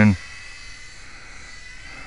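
Faint steady high-pitched whine of a micro electric RC airplane's motor in flight, over light wind noise. A man's voice ends just at the start.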